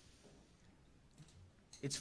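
Near silence: faint room tone with a faint click about a second in, then a man starts speaking near the end.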